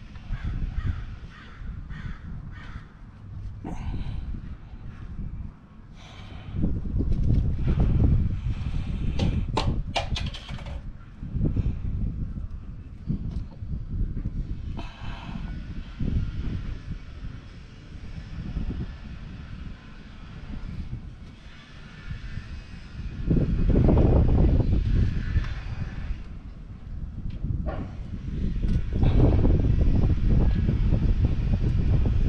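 Hands working among engine-bay hoses, with scattered knocks and a cluster of sharp clicks about ten seconds in, over gusts of wind rumbling on the microphone.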